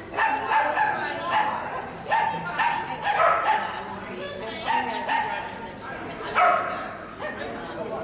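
Dog barking repeatedly in short, high yips, about one or two a second, while running an agility course.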